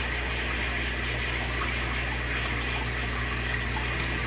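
Steady rush of running water as a Python gravel vacuum, driven by the running sink tap, draws water out of an aquarium, with a low steady hum underneath.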